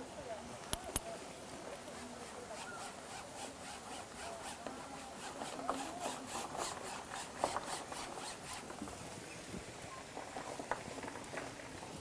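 An oil-paint brush rubbing paint onto canvas in quick back-and-forth strokes, about three a second for several seconds, after two sharp clicks near the start.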